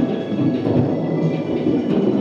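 Electronic keyboard synthesizer being played: a dense, continuous run of notes and chords with no voice over it.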